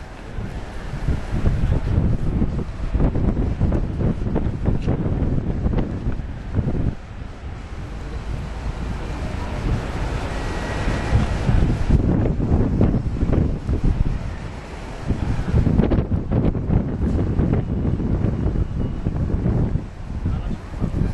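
Wind buffeting the camera microphone in uneven gusts, a rough low rumble that swells and eases several times.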